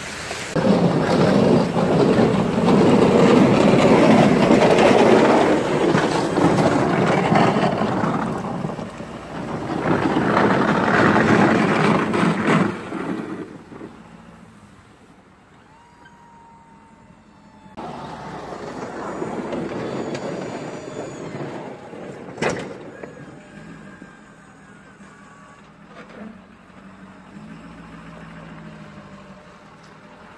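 Diesel Ford F-250 pickup with a snowplow blade working a snowy driveway: engine and plow noise are loud for the first twelve seconds or so, then drop away and return more faintly as the truck works farther off. A single sharp clack comes about 22 seconds in.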